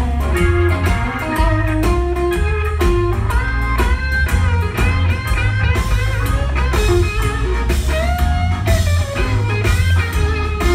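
Live blues-rock band playing an instrumental passage: an electric guitar lead with bent, sustained notes over drums and bass.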